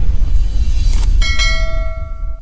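Logo intro sound effect: a deep, loud rumble, joined about a second in by a bell-like chime struck twice in quick succession that rings on as the rumble fades.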